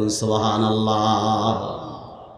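A man's voice intoning one long, drawn-out melodic phrase into a microphone, the held note trailing off into hall echo near the end.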